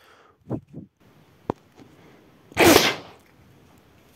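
A PVC-pipe blowgun fired at a balloon: a hard puff through the pipe and the balloon bursting, one loud sharp burst about two and a half seconds in. A few faint knocks come before it.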